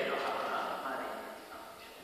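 A person speaking in a large stone church, the voice dying away into the echo about a second and a half in.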